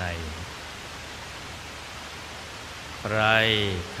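A man speaking slowly in Thai, with a pause of about three seconds in which only a steady hiss is heard; his voice returns near the end.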